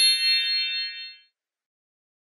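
Electronic chime sound effect: a quick flurry of bright tinkling notes running into a ringing chord that fades away a little over a second in.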